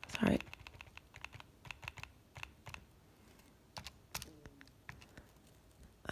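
Keys of a Casio fx-85GT Plus scientific calculator being pressed, an irregular run of light clicks as an expression is keyed in.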